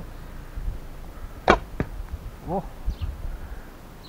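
A 30 lb Alibow Turkish-style horsebow is shot with a thumb-ring release. The string snaps sharply about a second and a half in, and a shorter click follows about a third of a second later as the heavy Port Orford cedar arrow strikes the target bag.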